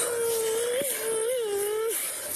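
A young girl just pulled from icy pond water gives one long, slightly wavering cry. It is the audible noise that showed she was still alive and breathing.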